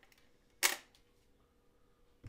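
A single sharp mechanical click from the turntable's control lever being switched about half a second in, once the 78 rpm record has finished playing.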